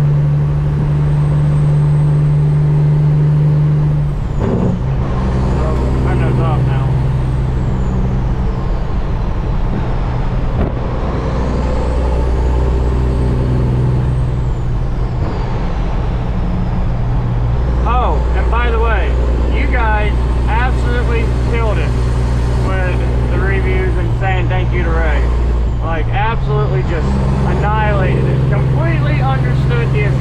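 Semi truck's diesel engine pulling steadily, heard from inside the cab. Its note changes about four seconds in and again near the end. Over it a high whistle rises and falls slowly.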